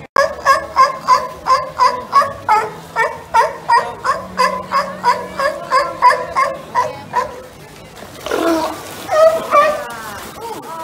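Sea lion barking in a steady run of about three barks a second, then stopping about seven seconds in. Voices follow near the end.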